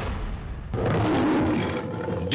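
A growling, roar-like sound effect in the soundtrack, rough and noisy, swelling about three-quarters of a second in.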